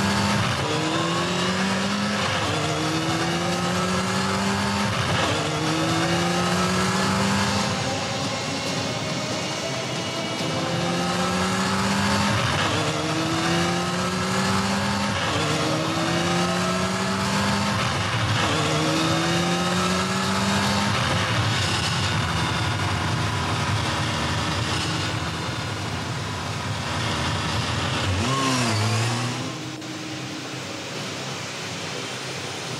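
Motorcycle engine at full throttle, its pitch climbing and dropping back at each gear change, over and over, over a steady rushing noise. A swooping pass comes near the end.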